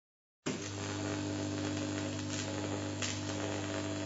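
A steady low hum with a hiss over it, starting abruptly about half a second in.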